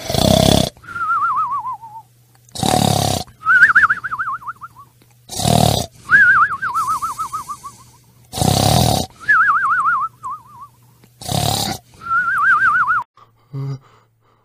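Cartoon-style comic snoring: five loud rasping snores about every three seconds, each followed by a warbling whistle that slides down in pitch.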